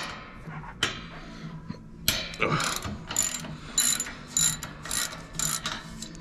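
Socket ratchet clicking as a U-bolt nut is loosened: a single click just under a second in, then a run of quick strokes, about three a second, from about two seconds in until near the end.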